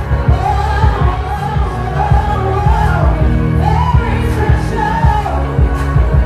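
A woman singing an R&B song live into a handheld microphone over a loud, bass-heavy backing track with a beat.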